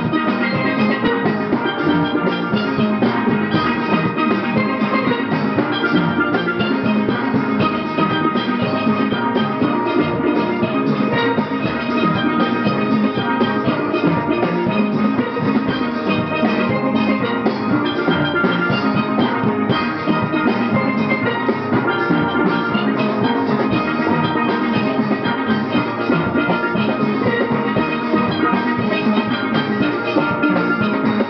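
A steel orchestra of many steelpans playing a tune together, the pans struck with sticks in fast, continuous runs of ringing notes over a steady beat.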